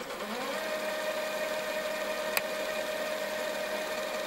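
Sound-design effect of a small motor whirring: it spins up in pitch over the first half second, then runs at a steady hum. A single sharp click comes a little past halfway.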